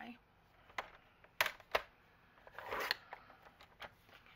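Paper trimmer cutting a sheet of patterned paper: a few sharp clicks as the paper and cutting arm are set, then the short hiss of the cut about two and a half seconds in.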